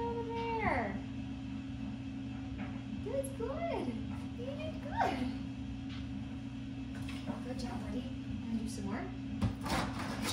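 Dog whining in high, wavering glides while waiting, over a steady electrical hum. Near the end come a few sharp scratches as the dog's claws strike the sandpaper pad of a nail-scratch board.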